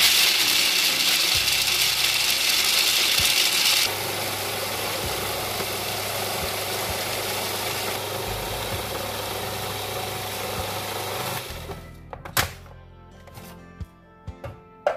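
Electric food processor running, its blade grinding pistachios into a fine meal. It starts suddenly, runs loudest for about four seconds, then a little quieter until it stops about eleven and a half seconds in, followed by a couple of sharp knocks.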